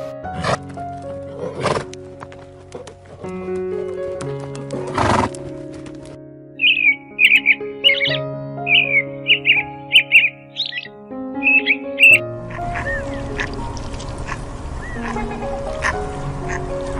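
Background music with a steady melody. In the middle a bird gives a quick series of short, high chirping calls lasting several seconds.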